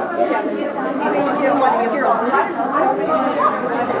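Several people chattering at once, overlapping voices with no single clear speaker.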